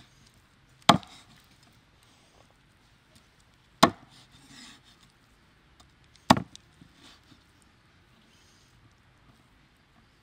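Meat cleaver chopping through raw chicken onto a wooden chopping board: three single sharp chops a couple of seconds apart, with soft rubbing as the cut pieces are moved between strokes.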